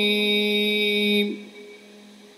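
A man's voice holding one long chanted note at a steady pitch in melodic recitation. The note ends with a slight dip about a second and a quarter in, then falls to a faint lingering tone.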